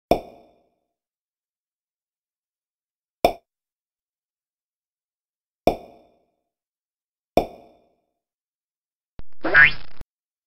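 Four cartoon 'plop' sound effects, single short pops a few seconds apart, as animated labels pop onto the screen. Near the end comes a louder effect that rises in pitch and is cut off abruptly.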